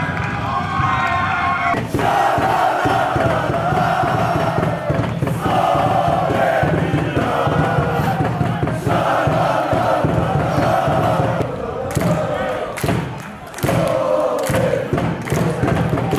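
A group of men's voices chanting together in unison, loud and sustained, with several sharp claps near the end.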